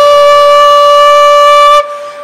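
Bansuri, a bamboo transverse flute, holding one long steady note that breaks off shortly before the end.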